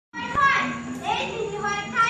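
Children's voices, several at once, calling out and talking with rising and falling pitch, as children do at play; the sound cuts in suddenly just after the start.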